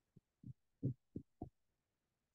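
Five soft, low thumps about a third of a second apart, the middle one the loudest, picked up by a call participant's microphone.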